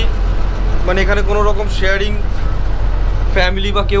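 Steady low drone of a river launch's engine heard inside its cabin, under a man talking.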